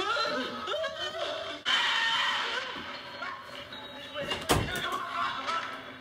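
A loud rush of noise starting about two seconds in and lasting about a second, then a single sharp thump a couple of seconds later, over voices and background sound.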